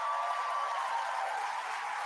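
Large audience applauding and cheering, steady, with a few long held cheers over the clapping.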